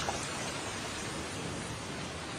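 Steady hiss of falling rain, a rain-and-thunder sound effect at the tail of a recorded song.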